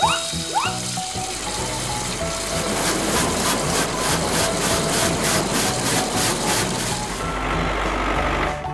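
Toy car-wash sound effect: a dense hiss of spraying water that pulses rhythmically through the middle, over children's background music, after two quick rising whistle-like glides at the start. A low engine rumble grows near the end.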